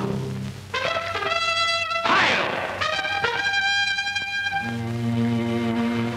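Orchestral cartoon score led by brass, playing held chords. A short noisy swell comes about two seconds in, and low brass notes enter near the end.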